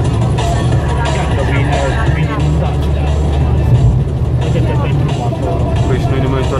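Steady low drone of a car's engine and tyres on a wet road, heard inside the cabin, under music with a singing voice.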